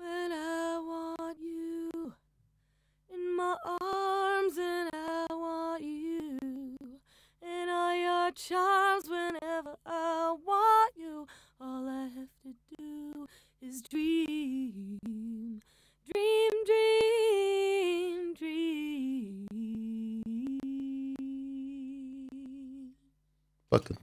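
An unaccompanied solo singing voice in phrases, played back through an expander plugin whose fall time is raised to soften the cut. Between phrases the voice drops away to near silence, the background cleanly removed. A long, low held note comes near the end.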